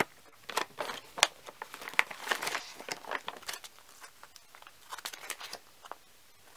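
Plastic packaging crinkling and crackling as it is handled, in irregular clusters of sharp crackles that thin out after the middle, with a few more about five seconds in.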